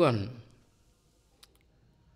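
A man's voice drawing out the last word of a phrase with a falling pitch, then a pause of near silence broken by one faint click about a second and a half in.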